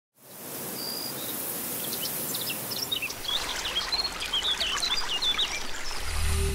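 Countryside ambience of small birds chirping and twittering, many short calls and quick whistles, over a steady hiss. It fades in at the start, and the birdsong grows busier from about two and a half seconds in.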